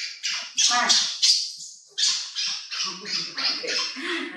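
Baby macaque giving a run of short, high-pitched calls, with a woman's voice talking to it in the second half.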